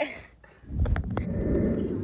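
Road and engine rumble inside a moving car's cabin, starting suddenly about half a second in, with a few sharp clicks soon after.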